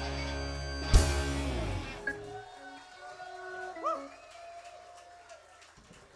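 Live punk rock band ending a song: amplified guitars hold a final chord, cut off by a loud last hit about a second in that rings out. Then faint scattered crowd whoops and cheers fade away.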